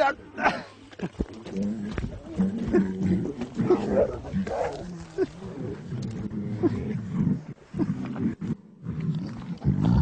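Lions making low, drawn-out calls at close quarters, one after another.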